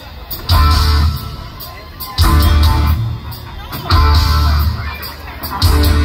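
Live rock band playing an instrumental passage: the whole band strikes heavy chords on electric guitar, bass and drums about every second and a half, letting each ring and fade before the next hit.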